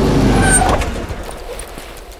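A motor vehicle's low rumble, loud at first and fading away over about a second and a half.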